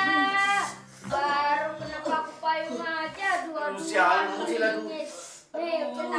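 A young boy crying and wailing loudly in long, wavering cries, broken by a short pause about a second in and another near the end.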